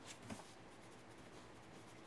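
Faint scratching of a graphite pencil on drawing paper.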